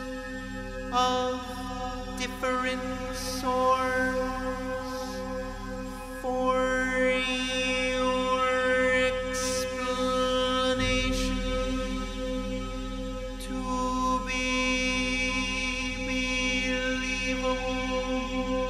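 Electronic music from a pre-recorded electronic orchestra: a held chord of steady tones with pitches sliding up and down over it and short bursts of high hiss now and then.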